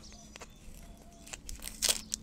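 Fingers picking at a small potted stapeliad succulent, pulling something off it: scattered soft clicks and crackles, then one brief, louder crunchy snap near the end.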